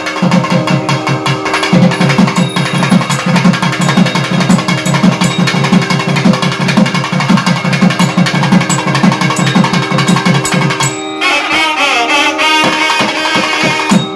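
Two thavil drums playing a fast, dense rhythmic passage over a steady drone. About eleven seconds in, the drumming thins out and a nadaswaram enters with a winding melodic phrase.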